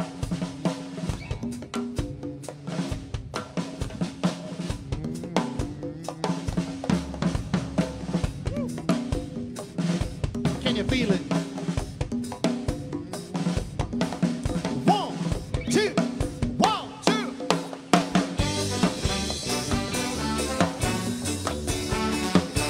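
Live ska band playing a percussion-led intro: congas and drum kit keep a steady, busy rhythm over a bass line. About eighteen seconds in the band fills out into a brighter, fuller sound.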